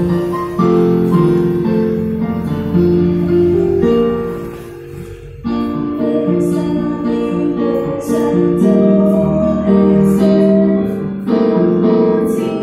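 Piano accompaniment playing a slow hymn tune, dipping briefly before a young girl's solo voice comes in singing the next verse about halfway through.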